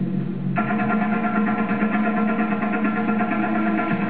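Music for a stage dance routine, with a brighter layer of held notes coming in about half a second in.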